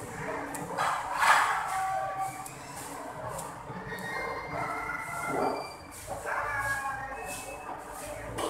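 Close-up sounds of eating rice by hand and chewing, irregular and uneven, with the loudest noise about a second in.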